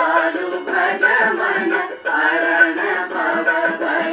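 Horn gramophone playing a 45 rpm record of sung Hindi devotional music. The sound is thin and narrow, with no deep bass or high treble, and the music dips briefly about halfway through.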